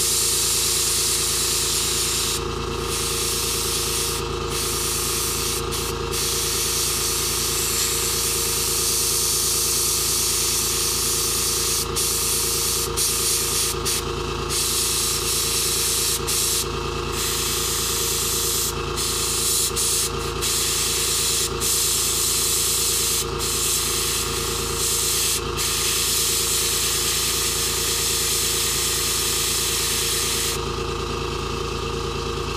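Airbrush spraying paint: a steady hiss of air broken by many short pauses between passes, over a steady low hum.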